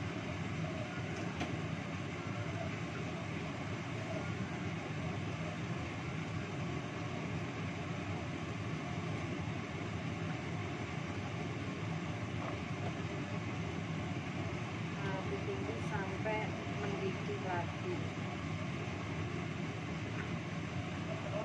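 Steady rumbling of a lit gas stove burner under a wok of simmering soup. Faint knocks near the start come as cauliflower florets go into the broth.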